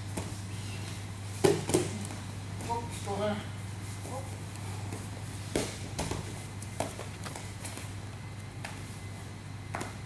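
Several people grappling on a padded gym floor mat: scuffling, with a few sharp thumps of bodies and limbs hitting the mat, the loudest about a second and a half in, over a steady low hum.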